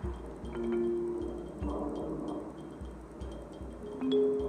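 Background music: sustained bell-like tones over a low beat that pulses about twice a second.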